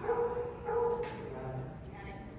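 A dog barking twice, two short pitched barks a little over half a second apart.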